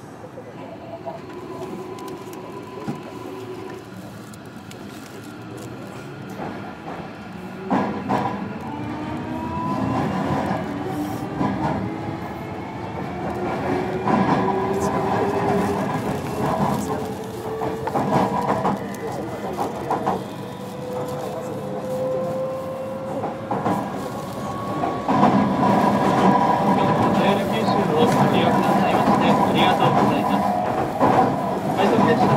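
JR Kyushu 305 series electric train heard from on board. About eight seconds in there is a clunk, then its VVVF inverter drive whines in tones that rise slowly in pitch as the train accelerates, with wheel and rail noise growing louder.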